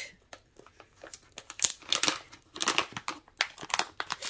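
Plastic resealable glitter pouch crinkling and crackling as it is handled, in irregular bursts of crackle.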